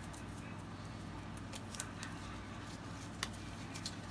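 Quiet room with a steady low hum and a few faint, short clicks.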